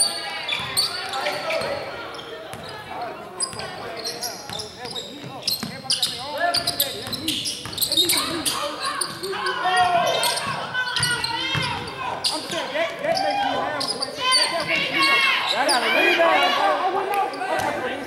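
A basketball bouncing on a hardwood gym floor as it is dribbled up the court, a run of short sharp knocks, mixed with players' shouting voices.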